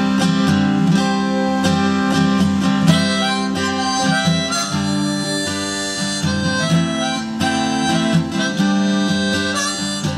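Acoustic guitar strummed in a steady rhythm while a harmonica in a neck rack plays the melody in an instrumental break.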